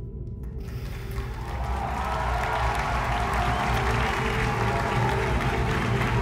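Music with low held notes, joined from about a second in by audience applause and cheering that swells and grows louder.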